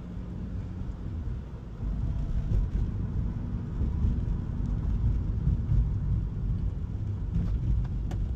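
Road and wind noise inside a moving Toyota Prius's cabin: a steady low rumble that grows louder about two seconds in.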